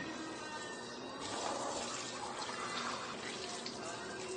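Hand-held shower head spraying water onto a stone shower floor: a steady hiss of running water that grows louder about a second in.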